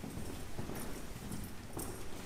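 Footsteps clicking on a hard floor, uneven and light, with a sharper knock near the end.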